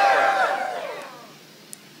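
Several voices at once, overlapping and trailing off a little over a second in, then a quiet room hum.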